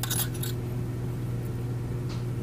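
A steady low hum with a few faint light rustles in the first half-second.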